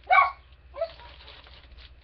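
A dog barks once, loud and short, then gives a smaller bark just under a second later, followed by a faint rustling of plastic.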